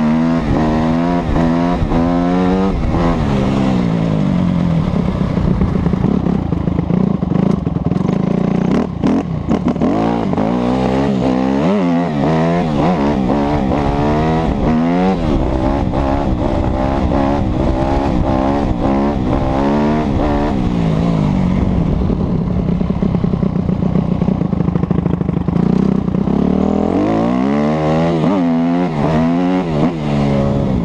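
2007 Kawasaki KX250F's single-cylinder four-stroke engine being ridden hard, its pitch climbing and dropping again and again as the throttle is opened and closed, including through a wheelie. There are a few sharp knocks about eight to ten seconds in.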